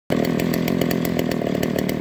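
An old chainsaw's two-stroke engine idling steadily, unattended, with no trigger pulled.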